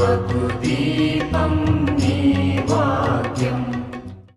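Devotional theme song: a sung, chant-like melody over a pulsing bass beat, fading out near the end.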